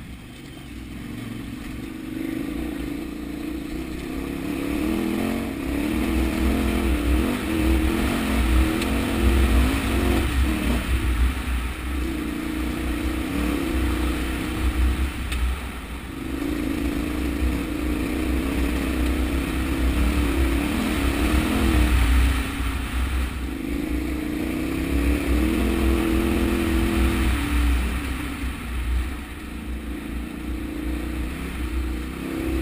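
KTM 990 Adventure's V-twin engine pulling the loaded bike uphill on a loose rocky track, the throttle opening and easing off every few seconds, over a steady deep low rumble.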